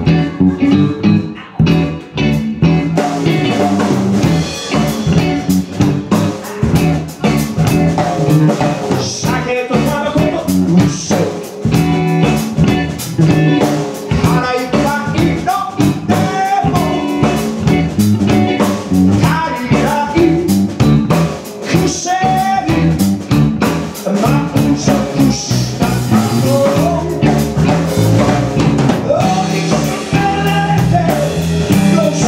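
Live blues-rock band playing: drum kit, electric bass and electric guitar, with the singer's lead line over them. The cymbals come in fully about three seconds in.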